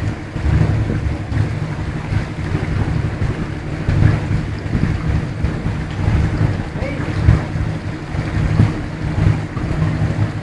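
A boat's engine running steadily inside a canal tunnel: a low, continuous drone.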